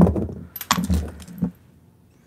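Small metal costume jewelry clinking and jangling as it is handled, starting with a sharp clack and followed by a few lighter clinks and rustles over the next second and a half.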